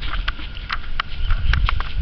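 Water splashing and slapping at the surface as sea turtles stir it, in a quick run of short splashes about four a second, over a low rumble of wind on the microphone.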